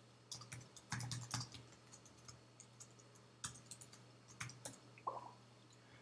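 Faint computer keyboard typing: irregular bursts of keystrokes as a line of CSS code is entered.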